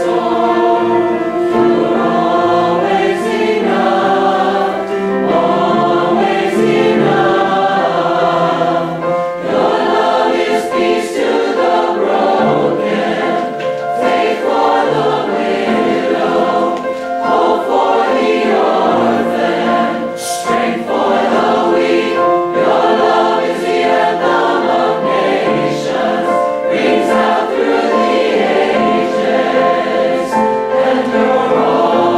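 Choir singing a sacred song, several voice parts together in harmony, sustained and continuous.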